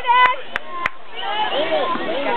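Spectators' voices calling out at a youth baseball game, with three sharp knocks in the first second.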